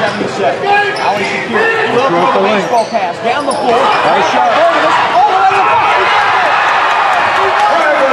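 Live basketball game in a gym: a basketball bouncing on the hardwood amid a loud crowd shouting and cheering, which rises as the home team celebrates near the end.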